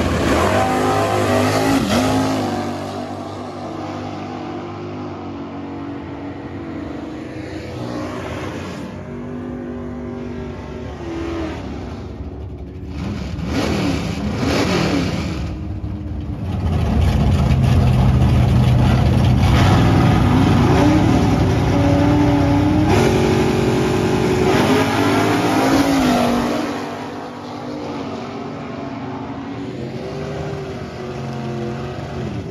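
Vintage drag cars' engines at the starting line: a loud burst of revving at the start, then idling with short rev sweeps around the middle, and a long loud stretch at high revs from about 17 to 26 seconds before dropping back to an idle.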